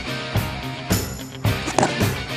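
Background music with a steady drum beat, about two beats a second, over sustained instrumental notes.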